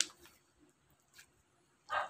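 Glossy slime squeezed in the hands, giving wet clicks and pops as air pockets burst: one sharp pop at the start, a few faint ones, and a louder squelch near the end.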